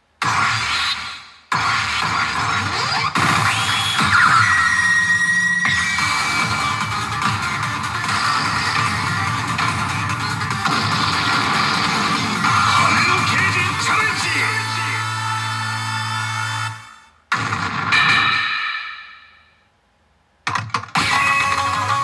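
A pachinko machine's presentation soundtrack from its speakers: loud electronic music and sound effects. The sound breaks off briefly about a second and a half in. Near the end it fades to near silence for about a second before starting again.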